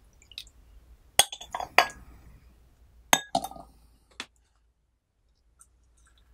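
Glass teaware clinking: a glass tea-serving pitcher and glass cup knock against each other and the tray as they are handled and set down. There are four sharp, ringing clinks in the first few seconds, the last one lighter.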